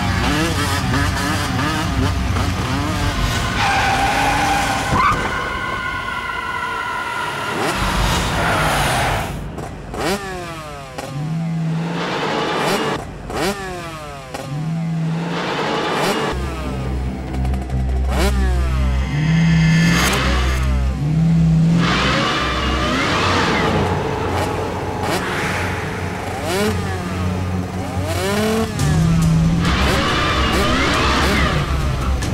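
Motorcycle engine revving hard, its pitch sweeping up and down again and again, with a background score underneath.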